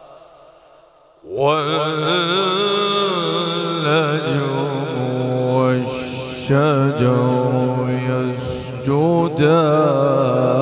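A man reciting the Quran in the melodic tajweed style, through a microphone. An echo dies away at the start, then about a second in his voice enters and holds long, ornamented phrases with a wavering, trilling pitch.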